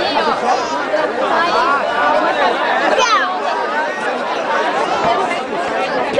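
Chatter of an audience: many voices talking over one another at once, with no single speaker standing out.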